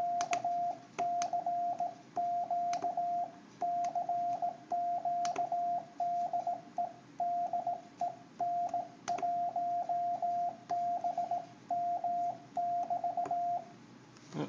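Morse code sidetone from a Yaesu FT-950 transceiver's built-in keyer: a single steady tone of about 700 Hz keyed on and off in quick dots and dashes, character after character, as a touch paddle is worked. It stops shortly before the end. Sharp light clicks occur now and then.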